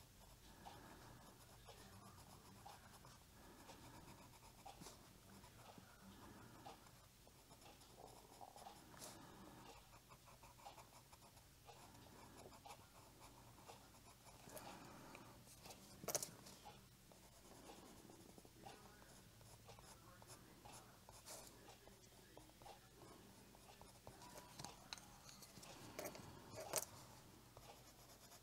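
Faint, steady scratching of a colored pencil shading on paper over a marker base, with one sharp tap about two-thirds of the way through.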